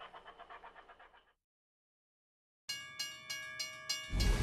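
Large-scale model train running past, its wheels clicking rapidly over the rail joints, fading out about a second in. After a silent gap, a railroad-crossing bell starts ringing, about three strikes a second.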